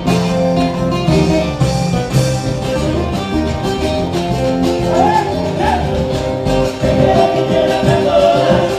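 Live band playing Latin dance music through a PA: several guitars lead over bass guitar and a drum kit keeping a steady beat.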